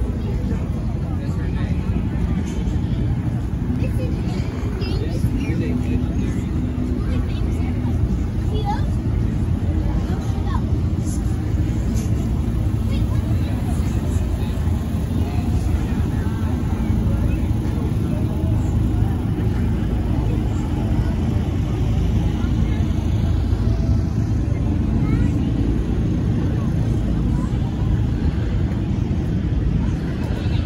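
Crowd of people talking in the background over a steady low rumble.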